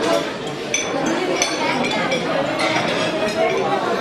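A roomful of diners chatting over one another, with plates, cutlery and glasses clinking every second or so.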